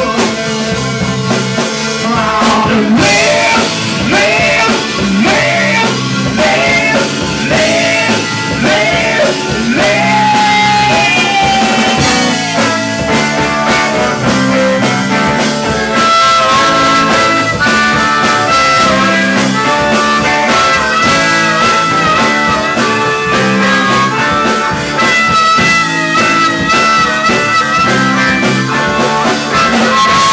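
Live rock band in full swing in an instrumental break: a harmonica played cupped against the vocal microphone wails over electric guitar, bass and drums. Its notes bend and waver in the first half and turn to longer held notes later.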